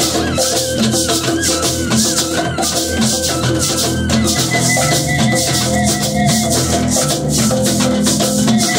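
A hand shaker played in a steady, even rhythm, leading a live group jam, with held pitched notes from other instruments underneath.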